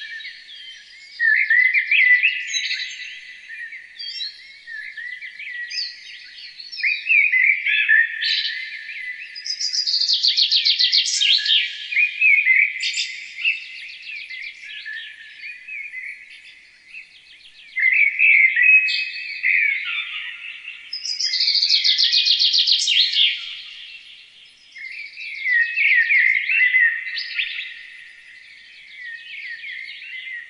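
Songbird singing varied phrases of trills and chirps, a new loud phrase starting every few seconds.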